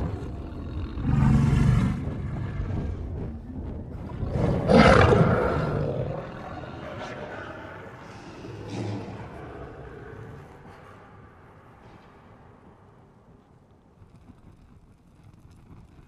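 A pack of wolves growling in the dark, in three loud bursts, the loudest about five seconds in, then dying away over the last few seconds.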